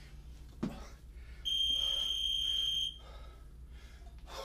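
A single long electronic timer beep, one steady high tone lasting about a second and a half, marking the timed kettlebell set. Just before it comes a short, sharp forced breath from the lifter.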